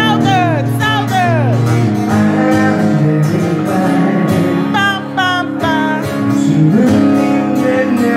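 Acoustic guitar strummed with a man singing into a microphone. His voice slides down in pitch on several notes in the first second and a half, with more sung notes about five seconds in.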